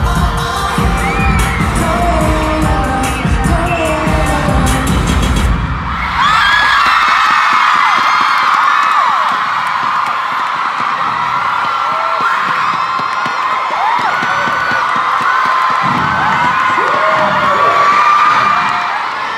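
Loud K-pop music with a heavy beat through a concert sound system, cutting off about six seconds in. A large crowd then takes over, many overlapping voices screaming and cheering at a high pitch.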